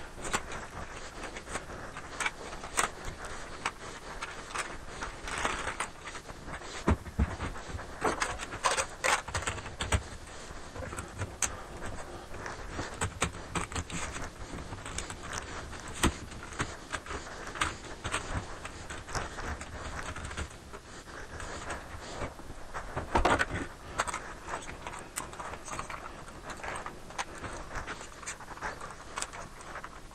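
Handling and assembly noise of a tripod and metal telescopic camera crane: scattered clicks, knocks and light metallic rattles as the parts are fitted together, with a louder cluster of knocks a little past the middle.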